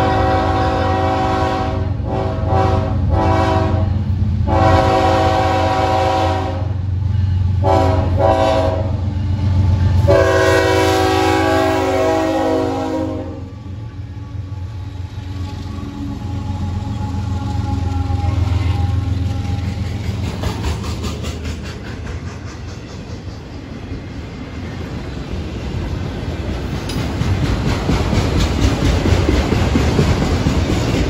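Florida East Coast Railway GE ES44C4 diesel locomotives sounding the grade-crossing horn signal, long, long, short, long, as they approach. The locomotives' engines then rumble past, and the wheels of the following autorack cars clack over the rail joints.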